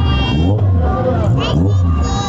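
Parade race cars' engines running at low speed as they drive slowly past, with a voice over the top.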